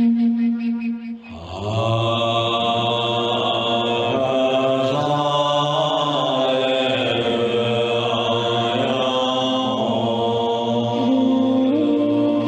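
A flute's held note fades out about a second in, then a deep male voice chants a mantra in long, slowly shifting held tones. The flute comes back in under the chant near the end.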